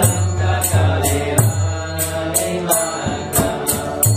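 Devotional kirtan chanting, with small hand cymbals striking a steady beat about three times a second over a sustained low drone.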